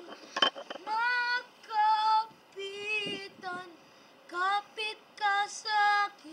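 A boy singing unaccompanied in short held phrases with brief pauses between them. A short sharp click sounds about half a second in.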